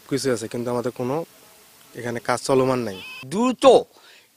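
A man speaking in Bengali, in two stretches of talk with a short pause between them.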